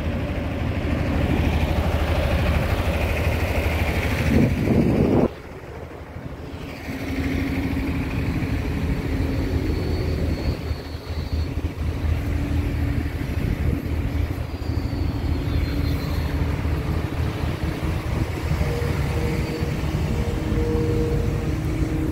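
Caterpillar crawler excavator's diesel engine running steadily, with no breaker strikes. The sound drops suddenly about five seconds in and comes back about two seconds later, with a faint steady whine over the engine.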